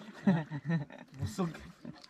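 Men's voices talking in short phrases, the words not made out.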